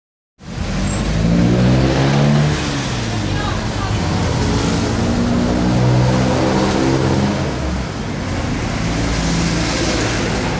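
Indistinct talking over a steady low rumble.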